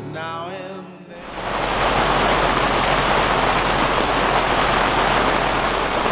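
Heavy rain falling on a cotton canvas bell tent, heard from inside as a loud, dense, steady hiss. It cuts in suddenly about a second in, after the tail of a song with singing.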